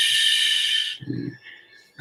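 A man's drawn-out hissing breath through the teeth or lips, like a long "sss", lasting about a second. A short, low murmur follows.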